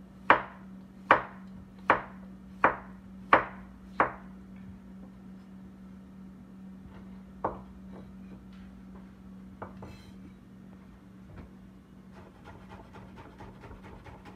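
Large kitchen knife cutting a cucumber on a bamboo cutting board: six sharp chops, about one every three-quarters of a second, then a few scattered knocks. Near the end come quick, light, rapid chops as the slices are cut into fine pieces, over a faint steady hum.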